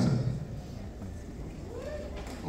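A short rising call from a lone voice in a concert audience near the end, over low crowd background.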